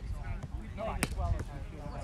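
A roundnet ball smacked once about a second in, a single sharp hit over faint voices and a low wind rumble on the microphone.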